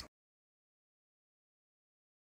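Silence: the sound track drops to nothing right after the narration ends, with no room tone.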